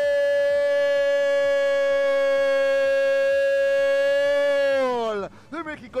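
A football commentator's drawn-out goal cry: one "gol" held at a single steady pitch for about six seconds, its pitch falling away near the end.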